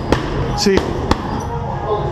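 Boxing gloves smacking into the coach's pads in quick punches, about four sharp hits in two seconds.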